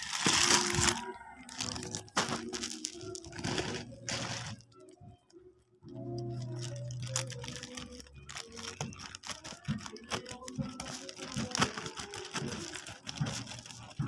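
Plastic courier bag rustling as it is handled and opened by hand, in uneven spurts with a short quiet spell around the middle.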